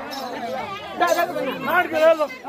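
Several people talking at once, their voices overlapping, louder from about a second in.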